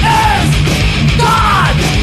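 Crossover thrash metal recording: distorted electric guitars, bass and drums playing loud and dense, with shouted vocals that fall in pitch twice.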